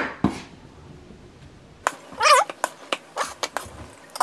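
Chef's knife scraping diced tomato across a wooden cutting board and tapping against the rim of a glass bowl: a knock at the start, then a quick run of sharp clicks and taps in the second half. A brief high wavering squeal about two seconds in.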